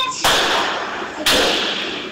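Gunshots in a recording played over a conference hall's speakers: two loud shots about a second apart, each with a long echoing decay. They are police bullets fired in a Rio favela.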